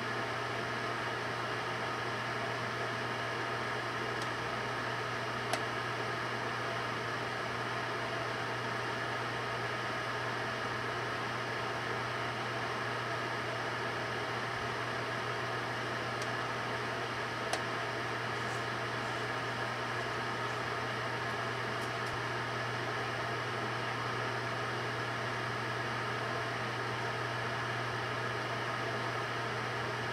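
Microwave oven running: a steady low hum with its cooling-fan noise, and two brief clicks partway through.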